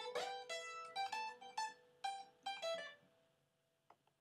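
A plucked string instrument playing a run of single ringing notes, about eight of them, that die away about three seconds in.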